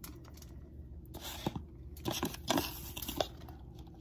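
Soft rustling and crinkling of hands working shredded cheese over a foil-lined baking tray: a few short crackles and light knocks between about one and three seconds in.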